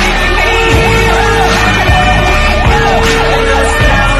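Fire truck siren yelping, its pitch sweeping up and down about twice a second, with a steady lower horn tone sounding twice for about a second each, over music with a heavy beat.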